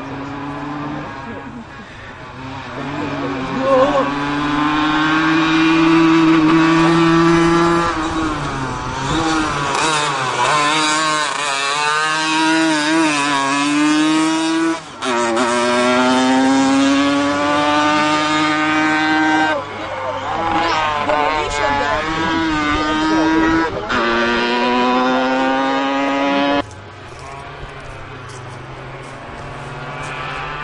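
Racing Piaggio Ape three-wheeler's small engine revving hard under full load up a hill-climb course. The pitch climbs and then drops back again and again as it changes gear, and it grows louder from about four seconds in as it comes near. The sound stops abruptly near the end.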